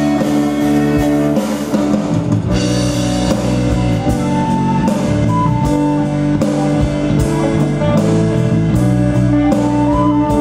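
Live band playing an instrumental passage with guitar and drum kit, between sung lines of the song.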